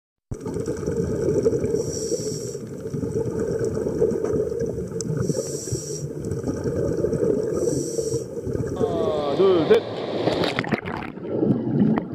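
Underwater bubbling and rumbling, with a short hiss about every three seconds. Near the end it turns into swirling bubbles and a few splashes.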